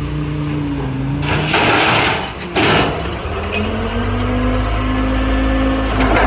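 Heavy diesel engines of a wheel loader and rear-loading garbage truck running. Two loud rushing, crashing noises come about one and a half and two and a half seconds in. After that the engine pitch rises and holds higher as it revs up.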